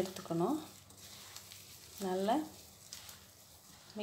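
Two brief spoken phrases, near the start and about two seconds in, over a faint, steady crackling hiss from a hand squeezing and mixing gram-flour batter with chopped spinach and potato.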